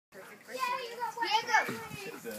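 A child talking in a high voice, the pitch sweeping down sharply about one and a half seconds in.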